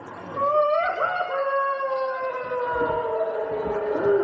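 A performer's voice holding one long, high vocal note. It rises briefly about half a second in, then slowly sinks in pitch almost to the end.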